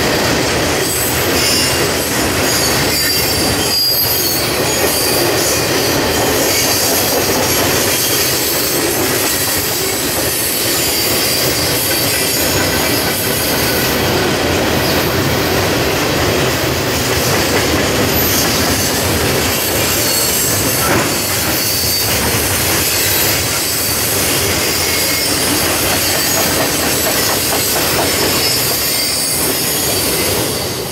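Mixed freight train's cars rolling past: a steady loud rumble of wheels on rail with a high-pitched squeal from the wheels now and then.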